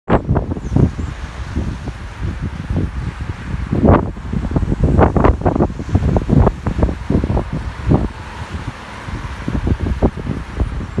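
Gusty wind buffeting the microphone in loud, irregular gusts that cover any other sound.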